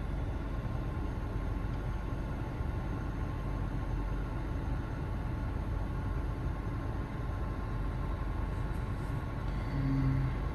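Steady low rumble of a car's engine idling, heard inside the cabin, with a faint steady hum over it. A short low tone sounds right at the end.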